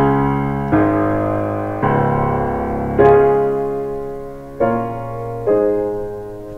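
Restored 1920s Baldwin Model D nine-foot concert grand piano played in its powerful bass: six chords struck about a second apart, each left ringing and slowly dying away.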